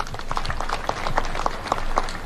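Scattered applause from an audience: a quick, irregular patter of separate hand claps.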